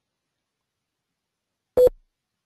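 Dead silence, broken near the end by one short, loud tonal blip lasting about a quarter second.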